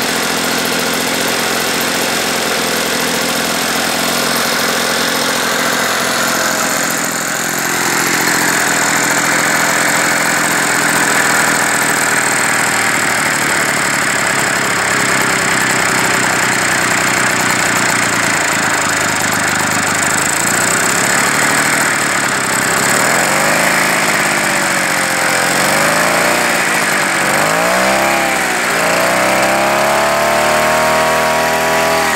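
Small Yanmar KT30 two-stroke sprayer engine running, its blower fan turning with it. The revs pick up about eight seconds in, then near the end they drop and climb again three times, finishing on a rise.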